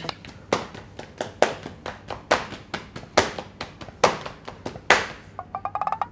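A series of irregular sharp taps or claps, roughly two a second, then a quick run of ticks near the end.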